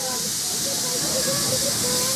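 Steady hiss of steam from a standing Baldwin 4-6-2 steam locomotive, slowly growing louder.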